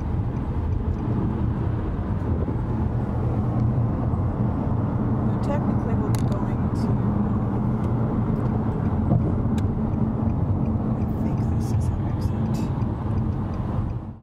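Steady road and engine noise inside a moving car's cabin at highway speed, with a few faint clicks.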